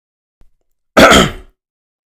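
A man clears his throat once, about a second in.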